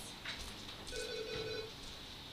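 A telephone ringing once: a steady electronic ring tone of several fixed pitches lasting just under a second, starting about a second in.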